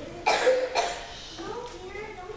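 Two short coughs about half a second apart, followed by a child's speaking voice.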